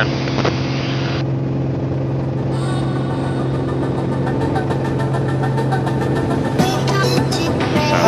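Steady drone of a 1981 Beechcraft A36 Bonanza's normally aspirated six-cylinder engine and propeller, heard in the cabin during a full-power climb. Background music with a steady beat comes in about two and a half seconds in.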